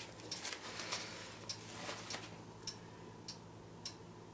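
Faint rustling and crinkling of a paint-soaked paper napkin being handled as it comes off a wet acrylic pour, over a steady faint ticking of a little under two ticks a second.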